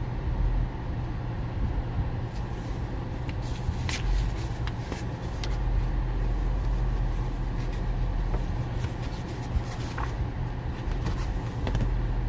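Pages of a comic book being turned and handled, with a few crisp paper flips scattered through, over a steady low hum inside a car.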